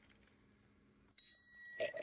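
Near silence, then about a second in a faint, steady, high-pitched electronic tone starts and holds.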